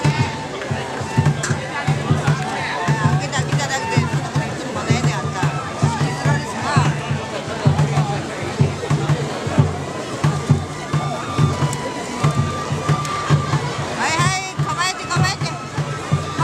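Festival float music with a low beat repeating about twice a second and some long held notes, over the voices of a large street crowd. Calls and shouts rise out of the crowd near the end.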